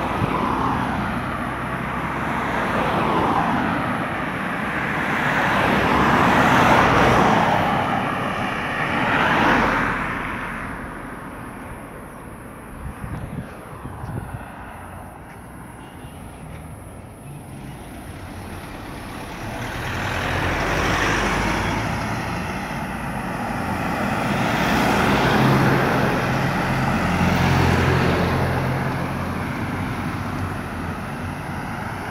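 Cars driving past on a road, each one a swell of tyre and engine noise that rises and fades away. Several pass in the first ten seconds, then the road goes quieter for a while, and more vehicles approach and pass near the end, with engine hum under the tyre noise.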